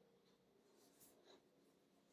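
Near silence: room tone, with a couple of faint light clicks about a second in.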